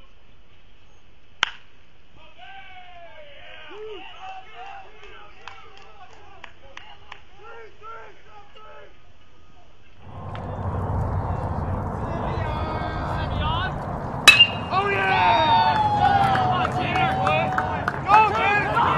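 A baseball bat hits a pitched ball with a single sharp knock about a second and a half in, followed by faint voices of players calling out across the field. About ten seconds in, a louder low rumble of background noise sets in under more voices, and a second sharp knock of bat on ball comes near the end.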